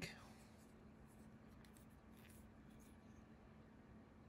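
Near silence: room tone with a faint steady hum and a few faint, soft handling sounds of a pipe stem being turned in the hand.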